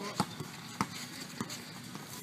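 Basketball dribbled on a hard outdoor court: three sharp bounces, evenly spaced a little over half a second apart.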